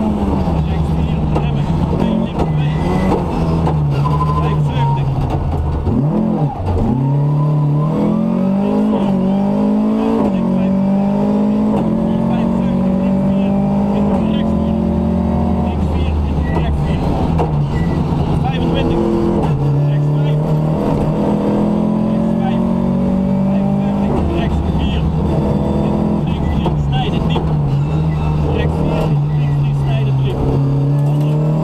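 Rally car engine heard from inside the cabin, driven hard on a stage. The revs climb repeatedly and drop back at each gear change, with a sharp fall about six seconds in before the engine pulls up again.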